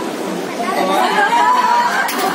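Indistinct chatter of several voices in a room, growing louder about halfway through, with one voice briefly holding a drawn-out sound.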